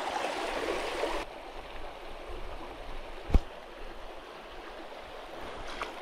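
Shallow, rocky stream running over rock ledges, a steady rush of water that turns duller and quieter about a second in. A single sharp click sounds a little over three seconds in.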